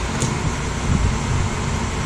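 Steady mechanical "g g g" noise from inside a powered-on DJI Mavic Pro held close, a sound its owner takes as a sign that something is blocking the processor cooling fan from spinning.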